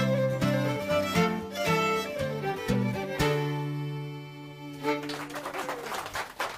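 Two fiddles and an acoustic guitar playing the last bars of an Irish traditional dance tune, closing on a long held chord about three seconds in that fades out. Applause starts near the end.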